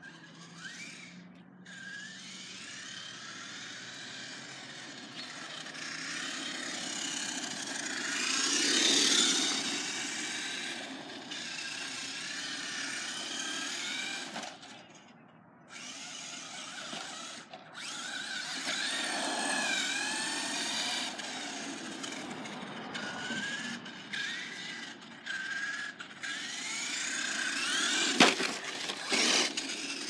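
Remote-control toy car's small electric motor whining, its pitch rising and falling as the car speeds up and slows. There are a few brief stops, the longest about halfway through, and it is loudest about nine seconds in.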